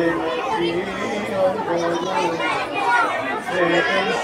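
Several people's voices overlapping without clear words.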